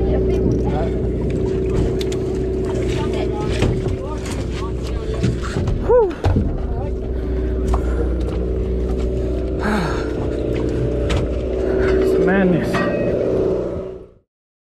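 Steady drone of a sportfishing boat's engine under way, with background voices and scattered clicks and knocks on the deck.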